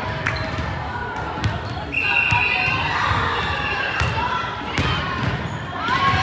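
A volleyball is bounced on a hardwood gym floor a few times before a serve. About two seconds in comes a short, steady whistle blast, followed by sharp ball contacts as the rally starts. Players' and spectators' voices echo around the hall, with shouting near the end.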